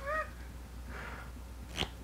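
A brief high-pitched squeak that rises and falls, lasting about a quarter second, then a soft rustle and a single light tap near the end as playing cards are handled on the table, over a low steady electrical hum.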